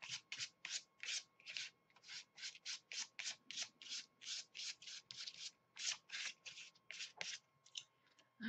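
Quick back-and-forth scrubbing strokes of a hand-held applicator working paint over paper, about three to four strokes a second, thinning out near the end.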